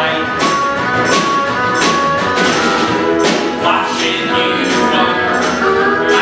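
Live acoustic Americana band playing: strummed acoustic guitars over a steady percussion beat, with held melody notes on top.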